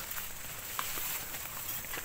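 Faint footsteps on a dirt footpath through leafy brush, with a few soft ticks and scuffs, over a steady high outdoor hiss.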